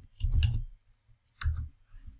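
Computer keyboard keys clicking in two short bursts, about half a second in and again about a second later.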